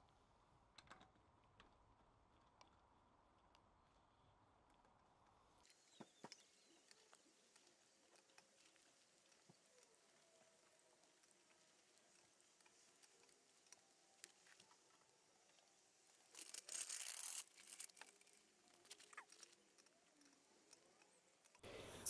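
Near silence, with faint scattered metallic clicks and one short scraping rattle about sixteen seconds in, as car wheel bolts are threaded into the hub by hand.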